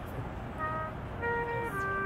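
Street musician's trumpet playing a melody: three held notes, each a step lower than the one before, over a low city background rumble.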